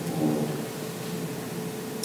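A pause in speech: steady low room noise with a faint steady hum, and a brief faint murmur of voice just after the start.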